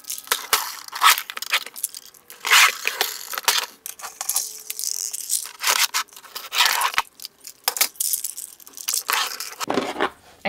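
Lipstick tubes and clear acrylic organizer trays clicking, clattering and scraping as they are lifted out and set back into a makeup drawer, in an irregular run of small knocks.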